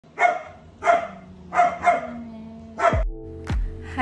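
A dog barking five times in the first three seconds, two of the barks close together. Music with a steady thumping beat starts about three seconds in.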